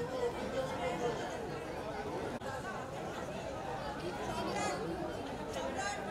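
Crowd chatter: many people talking over one another in a steady babble of overlapping voices.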